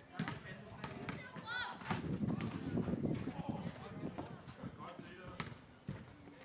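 A basketball bouncing on a paved outdoor court, several sharp bounces, among players' voices. One player gives a short call about one and a half seconds in.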